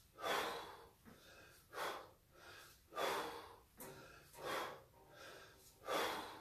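A man breathing hard while snatching a 24 kg kettlebell at 20 reps a minute: a loud, forceful breath about every second and a half, with quieter breaths between.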